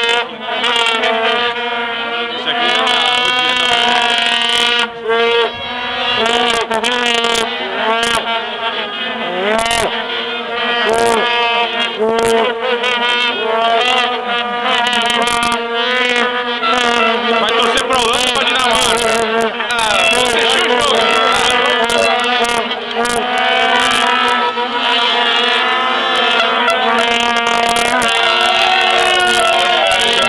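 Many vuvuzelas blowing a steady, unbroken drone on one low note, with a dense crowd of football fans shouting, chanting and singing over it.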